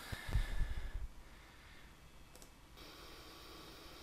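Computer mouse clicking while editing audio: a sharp click at the start and a faint one about two and a half seconds in. A low rumble follows the first click, and a faint steady hum comes in near the end.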